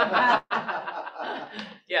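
People chuckling and laughing, mixed with a little speech.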